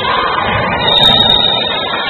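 Basketball referee's whistle blown once about a second in, a short high shrill blast that stops play, over steady crowd noise in the hall.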